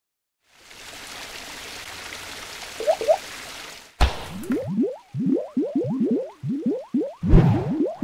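Cartoon splat sound effects for an animated paint-splatter logo: a steady hiss with two short chirps near the end of it, then a sharp splat about four seconds in, followed by a quick run of rising bloops, about three a second.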